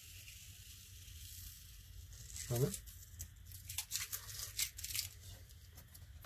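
Masking tape being peeled off watercolor paper, a crackly tearing that comes as a quick run of crackles in the second half.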